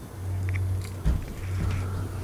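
Microphone handling noise through the hall's PA: a steady low hum with a bump about a second in as the microphone is moved.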